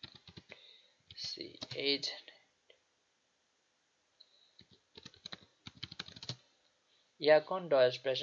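Typing on a computer keyboard: a short run of key clicks at the start, then a quicker burst of clicks about five to six seconds in.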